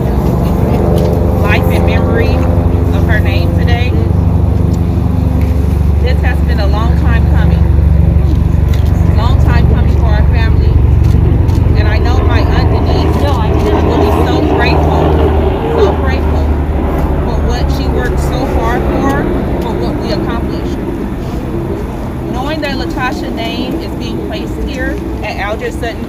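A motor vehicle's engine rumbling close by: a steady, loud low hum that is strongest through the middle and eases toward the end, with people's voices over it.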